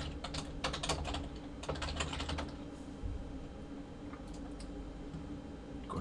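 Typing on a computer keyboard: a quick run of keystrokes for about two and a half seconds, then a few scattered clicks, over a low steady hum.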